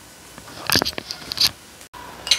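Wooden spatula scraping and stirring chicken pieces in a stainless steel wok, two short bursts of scraping about half a second apart.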